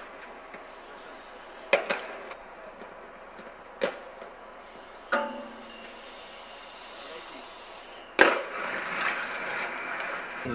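Inline skates knocking on concrete a few times, then, about five seconds in, a knock onto a metal stair handrail that rings briefly. Near the end comes the loudest impact, a skater landing, followed by steady skate wheels rolling on pavement.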